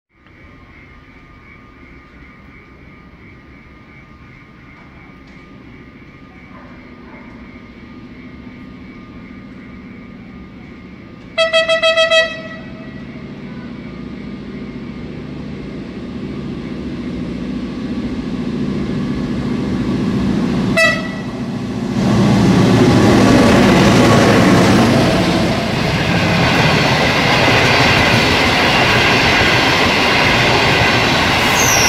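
Long-distance passenger train hauled by a Chinese-built diesel locomotive, approaching and running through the station: a steady rumble that grows louder, one horn blast of about a second a third of the way in, and a short toot about two-thirds in. After that comes the loud rush and clatter of the coaches passing close by.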